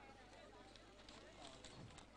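Near silence, with faint distant voices and a few light ticks.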